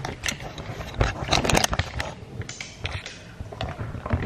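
Handling noise of a handheld camera being moved and set in place: a scattered run of clicks, knocks and light scrapes.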